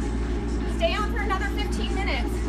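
Treadmills running under two people at a fast run: a steady, even belt-and-motor noise with their footfalls. A voice calls out briefly about a second in.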